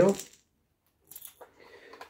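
The end of a spoken word, then after a short pause a couple of faint clicks and a light rustle from a small clear plastic lure box being handled, about a second in.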